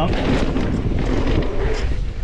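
Wind buffeting the camera microphone, mixed with the rumble of a mountain bike's tyres rolling fast over a dirt trail on a descent.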